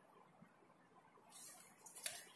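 Mostly near silence, with faint rustling from two people's clothing and feet as they spar on artificial turf, swelling near the end into a brief sharp swish.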